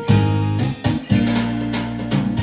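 Instrumental music played on a Yamaha PSR-series arranger keyboard: a beat and bass accompaniment under plucked, guitar-like notes, dropping briefly just before a second in, then a held low chord.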